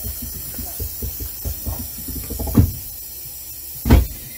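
Triple-bellows air bag jack inflating with a hiss of air inside a car's trunk, pressing out the car body. Two dull thumps, about two and a half seconds in and at the end, are the loudest sounds.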